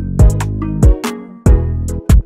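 Background music: a beat with heavy sustained bass and sharp drum hits about every two-thirds of a second. The bass drops out briefly in the second half.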